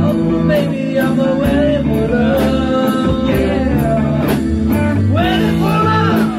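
A live rock band playing: drum kit with a cymbal struck about twice a second, bass guitar and electric guitars, with a long held melody note that bends slowly.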